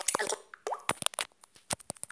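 An Android phone's screen reader making its short navigation sounds: a quick run of clicks and plops, with a brief rising tone about half a second in, as focus moves and the screen changes to the home screen.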